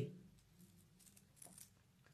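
Near silence, with a few faint soft ticks from small fishing beads being handled on a cloth-covered table.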